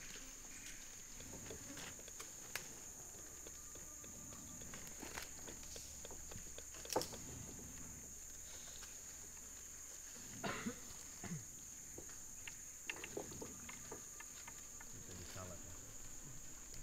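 Steady high-pitched drone of forest insects, with a few scattered sharp snaps or clicks, the loudest about seven seconds in.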